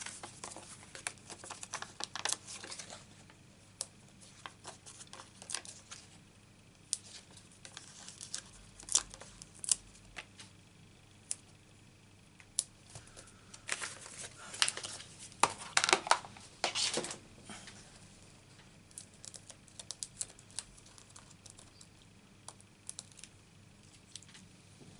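Card stock and a strip of foam adhesive dimensionals being handled on a craft mat: scattered rustling, crinkling and small clicks, with a louder run of crinkling a little past halfway.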